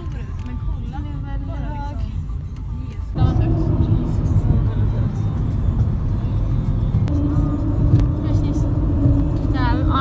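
Road and tyre noise heard from inside a car crossing a suspension bridge: a steady low rumble that starts suddenly about three seconds in. A steady hum joins it at about seven seconds.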